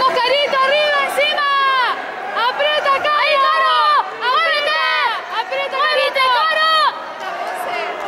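High-pitched shouting from spectators: a string of loud calls that stops about seven seconds in, over background crowd chatter in a large hall.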